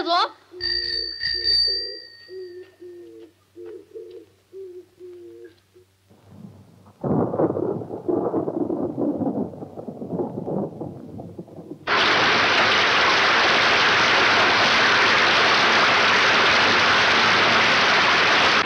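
A bicycle bell rung in the first few seconds, its ringing fading out. From about twelve seconds in, heavy rain starts suddenly and goes on loud and steady, pouring off a roof.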